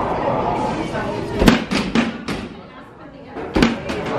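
A quick run of four loud slams around the middle, then two more near the end, over people's voices.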